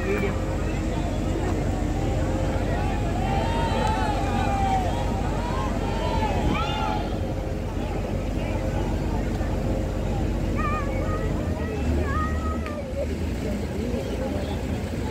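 A steady engine drone, with its low note shifting about three-quarters of the way through, under distant voices calling out now and then.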